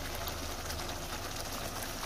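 Tomato-onion chicken gravy simmering on low heat in a frying pan: a steady soft sizzle with fine bubbling pops over a low hum.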